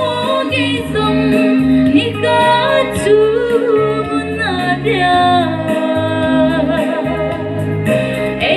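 A woman singing through a handheld microphone and PA, her voice sliding between held notes, over instrumental accompaniment with a pulsing bass.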